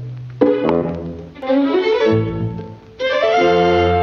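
Orchestral cartoon score with strings playing: a new phrase starts about half a second in, and a loud held chord starts about three seconds in.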